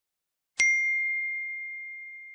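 A single bright ding about half a second in, one clear high tone that fades slowly: the notification-bell sound effect of an animated YouTube subscribe button.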